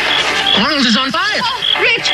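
Men's voices shouting for help, with music playing underneath that has a short high tone repeating about twice a second.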